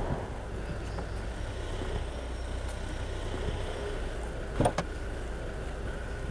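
Street ambience with a steady low rumble of car engine and traffic. Two sharp clicks close together near the end, a car door's handle and latch opening.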